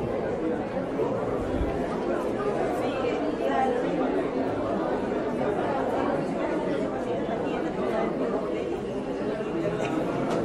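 Indistinct talk of many people in a busy supermarket, steady throughout, with no single voice standing out.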